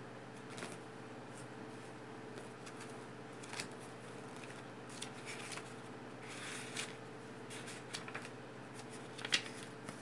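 Quiet paper handling: oracle cards and the pages of their paper guidebook being leafed through, giving scattered soft rustles and clicks over a faint steady hum.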